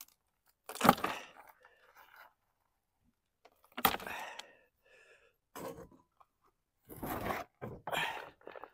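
Wood chip mulch being scraped and crunched off the top of a plastic potato pot by hand, in a few short bursts with pauses between. Near the end the plastic pot scrapes on a potting tray as it is tipped over.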